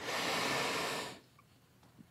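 A man's breath drawn in between sentences, about a second long.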